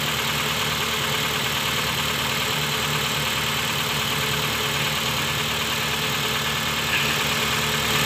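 Honda City i-DSI four-cylinder engine, with two spark plugs per cylinder, idling steadily with all its ignition coils connected. The owner traces its misfire to dead spark plugs on cylinders 3 and 4.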